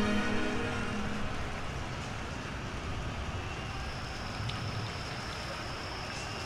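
The end of a held musical note dying away in the first second, leaving a steady, even rushing noise. A faint high steady tone joins it about halfway through.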